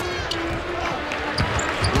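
Basketball being dribbled on a hardwood arena court, with repeated bounces and short high sneaker squeaks over the arena's background noise.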